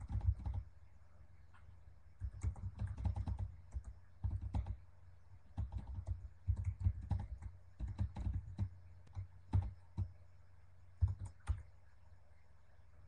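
Typing on a computer keyboard: runs of keystrokes in short bursts, with brief pauses between them.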